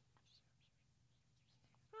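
Near silence: room tone in a pause between speech, with a couple of faint, brief sounds.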